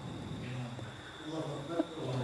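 Faint murmured replies from men in the audience, low and indistinct, over a steady high-pitched whine.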